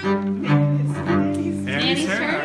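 Music: low, sustained instrument notes held steadily, stepping to a new pitch about half a second in. A child's high voice comes in near the end.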